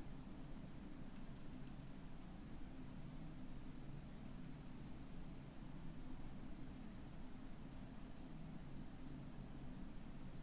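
Faint computer mouse clicks in three small groups of two or three over a low steady room hum.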